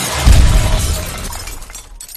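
An explosion: a sudden deep boom with glass shattering and debris clattering, dying away over about two seconds.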